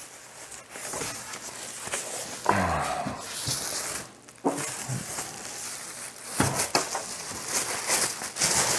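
Plastic wrap rustling and crinkling against a styrofoam packing insert as a boxed computer monitor is handled and lifted from its foam, with a few sharp clicks a little over six seconds in.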